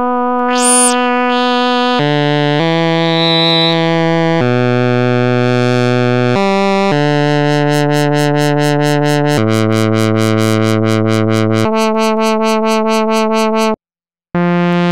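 WS-101 software synthesizer playing a slow line of single held notes on its oboe-like preset, the tone brightening and changing as it goes. In the middle the notes take on a fast even pulsing of about seven beats a second, and the sound cuts out briefly at the very end.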